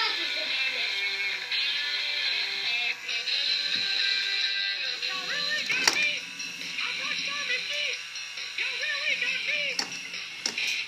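A battery-powered Mickey Mouse rock-star toy with a toy guitar plays its electronic rock tune, with a singing voice over the music in the second half.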